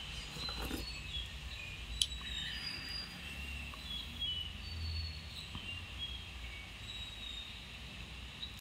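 Many short, high chirps at varied pitches from small animals, scattered through the whole stretch over a low steady hum, with one sharp click about two seconds in.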